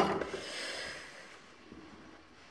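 A soft breath out close to the microphone, fading over about a second, then near silence.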